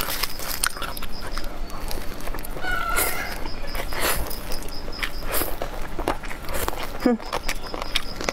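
Close-up eating sounds: stir-fried rice noodles slurped and chewed, with many short wet mouth clicks and smacks. A brief high-pitched sound comes about three seconds in.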